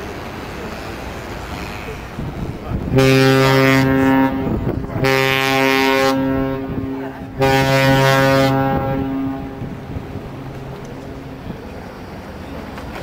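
Ship's horn sounding three deep blasts of one steady low note in quick succession, starting about three seconds in; the middle blast is the longest, and the sound echoes briefly after the last. Wind noise on the microphone before and after.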